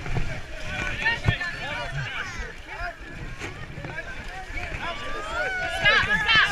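Several voices calling out and talking over each other in a crowd, growing louder near the end.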